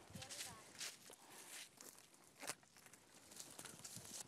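Faint rustling and crackling of dry crop stalks as people move through a field, with a few sharper snaps about one, two and two and a half seconds in, and faint distant voices early on.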